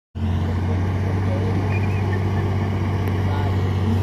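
Loaded dump truck's diesel engine running with a steady low drone as it drives slowly across a dirt site.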